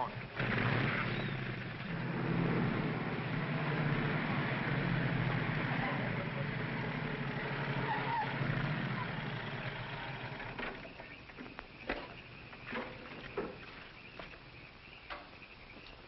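A motor vehicle engine starts and runs loudly for about ten seconds, then fades away. A few scattered clicks and knocks follow in the quieter last part.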